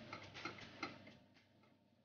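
Metal ladle and fork clicking and scraping against a nonstick frying pan while stirring chopped tomatoes: a few light clicks in the first second, then fading.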